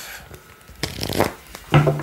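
A deck of tarot cards handled and shuffled by hand, with a short burst of card noise about a second in.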